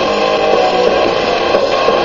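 Music playing from a Palm Pilot through a pair of small battery-powered portable speakers, with little bass; the speakers are loud enough.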